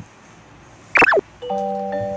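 Edited-in video sound effects: a quick pitch swoop that falls away about a second in, then steady sustained musical notes start shortly after and ring on.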